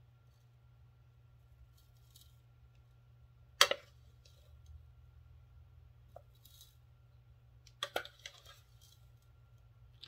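Metal spoon clicking against a food processor bowl while stirring and scooping ground dried hot peppers: one sharp knock about three and a half seconds in and a few lighter clicks near eight seconds, over a faint steady low hum.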